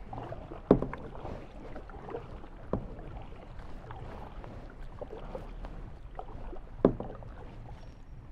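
Kayak paddle strokes dipping and splashing in calm river water, with two sharp knocks, about a second in and near the end, louder than the rest.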